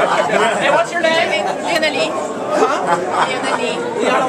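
Several people talking at once, close by, in overlapping chatter that the recogniser could not make into words.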